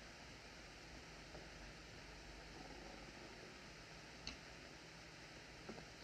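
Near silence: the steady hiss of an old film soundtrack, with a faint click about four seconds in and two more near the end.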